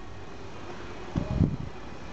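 Steady low background noise, with a short low rumble on the handheld camera's microphone a little over a second in.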